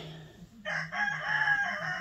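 A rooster crowing: one long call starting about half a second in, its pitch sinking slowly toward the end.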